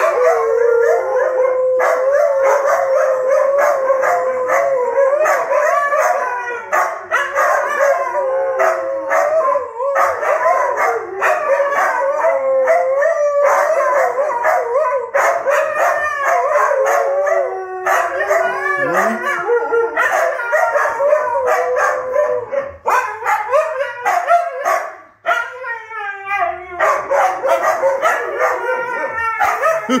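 Several Siberian huskies howling together in a chorus of long, overlapping howls. In the second half the howls break into shorter, wavering calls that slide up and down in pitch.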